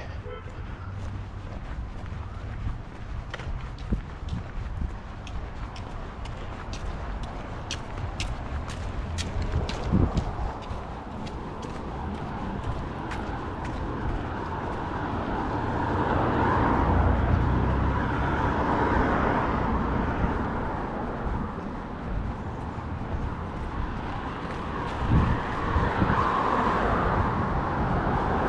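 Traffic on a city street: cars driving by, the loudest swelling and fading a little past halfway, with another rising near the end.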